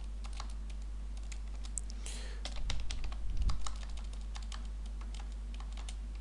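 Irregular clicking of computer keys, busier and louder from about two and a half to three and a half seconds in, over a steady low hum.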